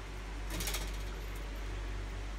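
A short burst of light metallic clicking from the wire cage about half a second in, over a steady low hum.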